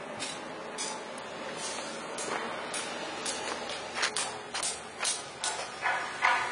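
Footsteps of someone walking on a dirt street, about two steps a second, over a steady outdoor background hiss.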